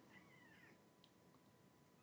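A house cat meowing once, a short, faint call that rises and falls, in otherwise near silence.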